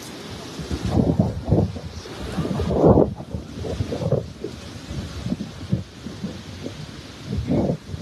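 Wind buffeting the microphone in uneven gusts, the strongest about three seconds in, over the wash of small waves on the shore.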